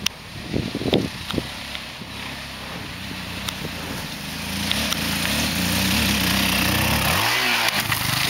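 Sport quad bike (ATV) engine approaching, growing louder over the second half, with a rising rev near the end. A few sharp knocks come in the first second or so.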